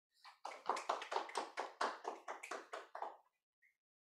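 Hand clapping as a talk ends: a short run of separate claps, about six a second, lasting about three seconds and then stopping.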